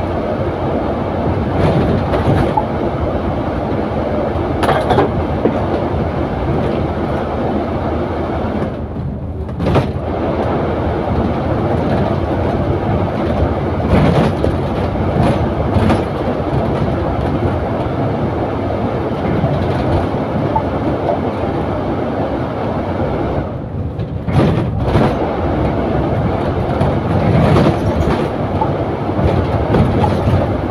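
Double-decker bus heard from inside its upper deck while under way: steady engine and road noise with frequent knocks and rattles. The noise dips briefly about nine seconds in and again near twenty-four seconds.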